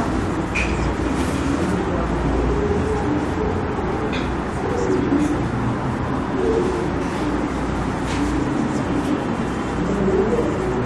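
Marker writing on a whiteboard, with a few faint short squeaks, over a steady low background rumble like distant traffic.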